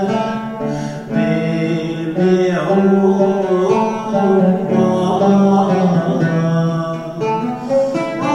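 Man singing a Turkish Sufi ilahi in makam segah in long held notes, accompanied by a plucked lavta, a small Turkish lute.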